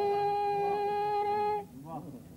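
A woman's singing voice holds one long, steady note in the sung (tarannum) style of reciting an Urdu ghazal. The note breaks off about one and a half seconds in.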